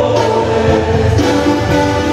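Live music: a male singer holding long sung notes into a microphone over band accompaniment, amplified through an arena sound system.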